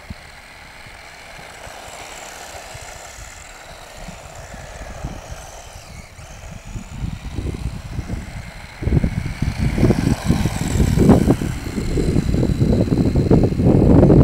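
Subotech Boarse Storm RC truck driving, heard from a camera mounted on it: a faint motor whine rising and falling with the throttle, then from about nine seconds in, loud uneven rumbling and knocks as the truck runs fast over rough ground.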